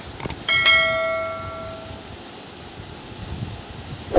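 Two quick mouse-click sound effects, then a notification-bell ding that rings out and fades over about a second and a half: the sound effects of a YouTube subscribe-button and bell animation.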